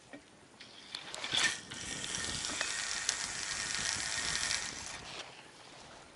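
A fishing cast with a spinning reel: a sharp swish of the rod about a second and a half in, then fishing line whirring off the reel spool for about three seconds before it fades out.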